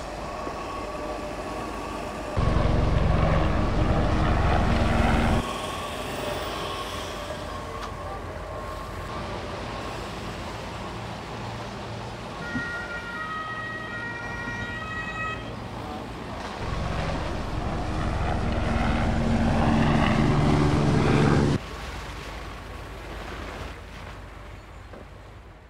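Emergency vehicle siren with other vehicle noise, and two spells of much louder heavy low rumble that start and stop abruptly.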